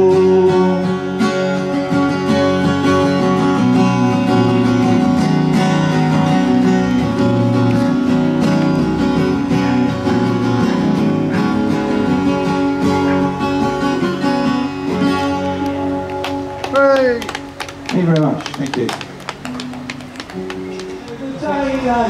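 Strummed acoustic guitar playing on after the last sung line of a folk song, as the song's closing bars, with held notes ringing under the strums; the playing thins out in the last few seconds.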